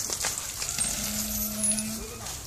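Hand-lever water pump being worked, with metallic clinks from the handle and water splashing from the spout onto the ground. A steady low tone sounds through the second half.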